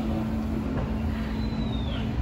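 Steady low rumble of the ride's boat moving through its water channel, with a faint steady hum and a short, high, falling whistle-like tone near the end.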